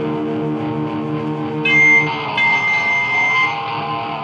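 Rock band playing live, electric guitars to the fore: a held chord rings, then a high sustained guitar note cuts in sharply just under two seconds in and is the loudest moment, with bending notes beneath it.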